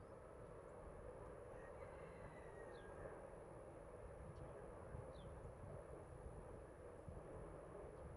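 Faint outdoor ambience: a steady low rumble of wind on the microphone, with short high chirps about every two seconds and a faint steady high whine.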